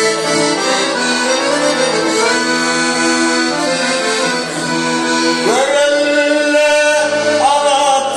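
Piano accordion playing a Turkmen folk melody in held chords; about five and a half seconds in, a man's voice comes in singing over it with a rising opening note.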